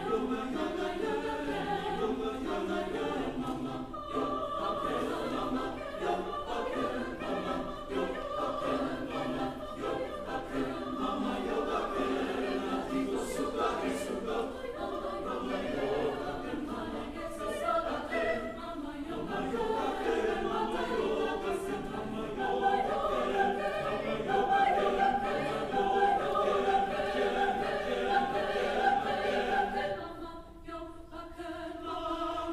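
Mixed choir singing a sustained choral piece, growing louder over the last ten seconds.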